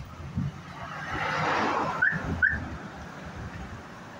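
Roadside street noise: a rushing sound swells and fades over about a second and a half. In the middle of it come two short, high, whistle-like chirps about half a second apart.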